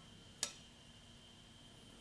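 A single short, sharp click about half a second in, against near-silent room tone.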